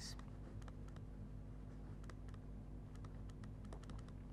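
Faint, irregular ticks and scratches of a pen writing stroke by stroke, over a low steady hum.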